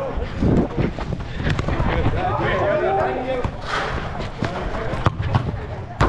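Indoor soccer on artificial turf: a soccer ball being kicked and players' footfalls make a few sharp thuds, the loudest about half a second in, while players' voices shout in the background.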